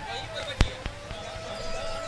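A single sharp knock about a third of the way in, then a faint click, over a faint steady ringing tone.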